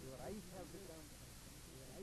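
A near-silent pause in a man's spoken lecture: low hiss, with a faint voice-like murmur in about the first second.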